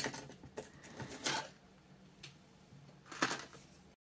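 Plastic parts of a Parkside fish-van kit clicking and tapping as they are handled and fitted together on a cutting mat. There are a few scattered clicks: the loudest about a second in, another just after three seconds. The sound cuts off suddenly at the very end.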